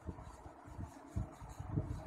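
Faint room noise with a few soft, low thumps: near the start, about a second in, and near the end.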